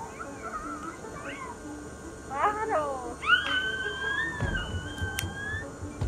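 A high-pitched voice calling out in short rising and falling cries, then one long held squeal about three seconds in, over faint background music.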